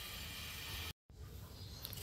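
Faint, even background noise with no distinct event, broken about a second in by a brief dropout to dead silence where the footage is cut.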